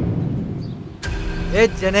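A loud rushing sound-effect swell dies away over the first half second into a low rumble. Then, from about a second and a half in, a man calls out in a drawn-out, sing-song teasing voice.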